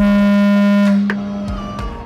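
A boat horn sounds one long, steady, loud blast that cuts off about a second in. Music follows.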